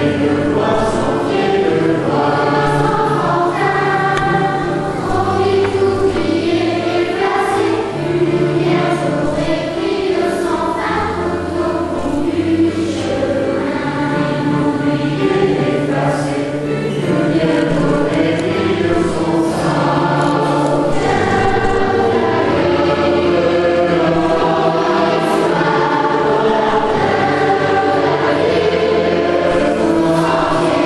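A mixed choir of children and adults singing together in unison, steady and unbroken throughout.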